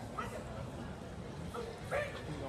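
Short, sharp shouts from voices in a large arena, one about a quarter second in and a louder pair near the end, over a steady crowd murmur. These are typical of the shouts heard during a karate kumite bout.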